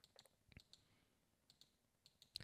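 Near silence: room tone with a few faint, short computer-mouse clicks.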